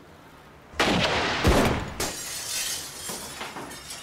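Gunfire and shattering glass: a sudden loud crash about a second in, the heaviest hit half a second later, and the noise dying away over the next two seconds.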